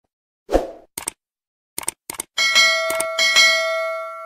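Subscribe-button animation sound effect: a soft thump, a few quick clicks, then a bell-like notification chime that rings with several pitches, is struck again twice, and fades away.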